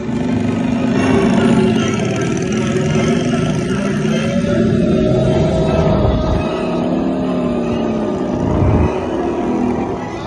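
Motorbike-style steel roller coaster running along its track at speed, with rumbling track noise and wind, and music playing over it.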